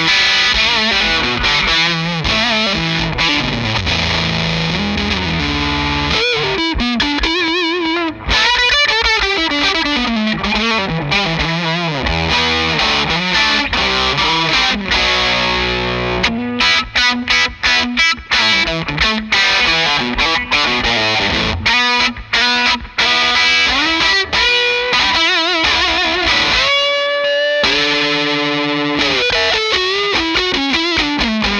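Electric guitar played through a distortion pedal and amp: a heavily distorted lead line with string bends and wide vibrato, a choppy run of short, clipped notes in the middle, and held notes near the end.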